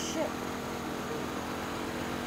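A motor running steadily in the background, a constant low hum, with a short sworn word right at the start and a couple of faint words after it.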